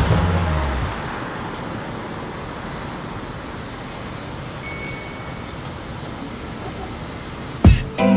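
Music fades out within the first second, leaving a steady hiss of street traffic. About five seconds in, a short, high, bell-like ding rings once. Music comes back in with a loud hit near the end.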